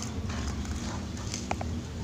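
Light clicking and tapping as a young zebra dove pecks at fingers held into its bamboo cage, over a steady low rumble. A short faint squeak about one and a half seconds in.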